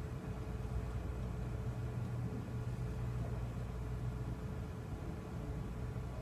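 Room tone: a steady low hum with an even hiss, with no distinct event.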